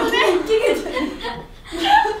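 Several young women laughing hard, one of them so hard she is out of breath. The laughter dies down past the middle and picks up again near the end.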